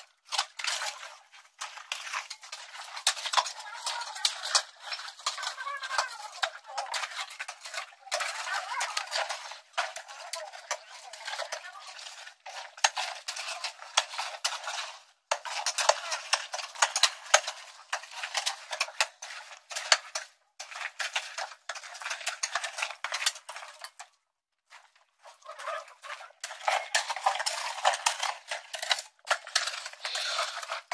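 Hand-digging tools clinking and scraping on soil and stone: a dense run of sharp metallic clicks and clatter. It breaks off and restarts abruptly several times, with a silent gap of about a second late on.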